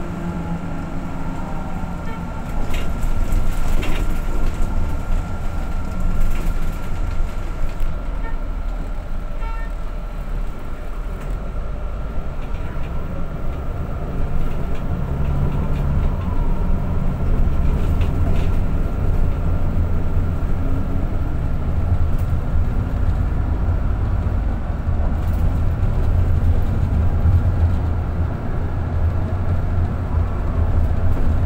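Ride noise inside a moving bus: a steady low rumble of engine and tyres, heavier in the second half, with a few short knocks and rattles about three to four seconds in.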